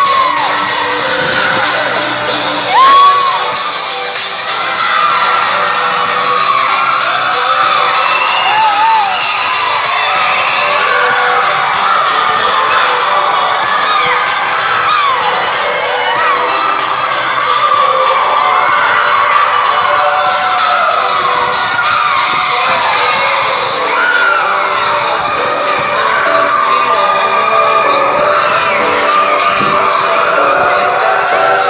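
A crowd of children shouting and cheering at once, many voices overlapping, with one louder shout about three seconds in.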